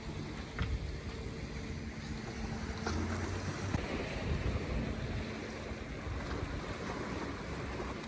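Wind buffeting the phone's microphone at the seashore, a continuous rushing noise with a fluctuating low rumble, over the wash of the sea and a faint steady hum.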